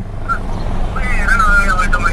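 A car's engine and road noise heard from inside the cabin while driving, a steady low rumble. About halfway through, a high, wavering voice-like call joins it.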